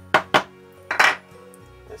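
Three sharp clinks and knocks of a small steel part and plastic containers being handled: two quick ones near the start, then a longer one about a second in. Steady background music plays underneath.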